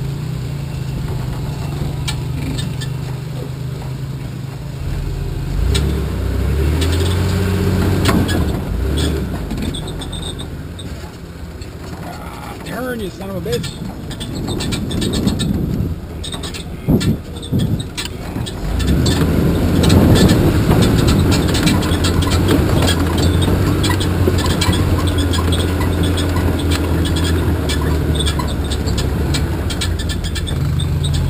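Solid-axle S10 Blazer's engine running as it crawls a rough off-road trail, with a few sharp knocks and clatters from the truck near the middle; about two-thirds of the way through the engine picks up and runs louder.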